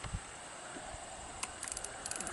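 A single low knock as the fishing pole's handle drops into the notch of the pole holder, then from about one and a half seconds in a fast, even ticking as the spinning reel begins to be cranked.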